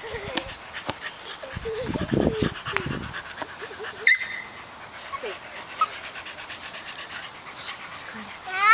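A corgi panting quickly in a steady run of short breaths. A person's voice is heard briefly about two seconds in.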